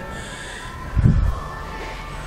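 Camera handling noise: a brief low rumble about a second in, over steady room noise with faint background music.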